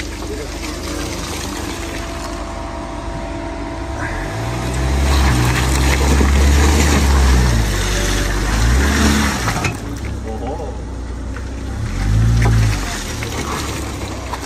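Great Wall Poer pickup truck's engine revving hard as the truck struggles to climb a steep mud slope off-road: a long, loud rev in the middle and a shorter one near the end, over the noise of the tyres in the mud.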